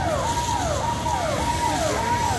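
Electronic siren cycling rapidly: each cycle holds a high note, then drops in pitch, about twice a second, over a steady rushing noise.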